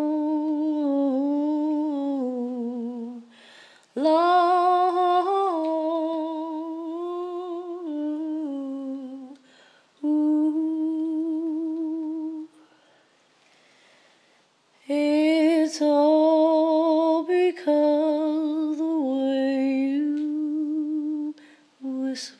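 A woman humming an unaccompanied melody with vibrato, in phrases broken by short breaths and one pause of about two seconds midway.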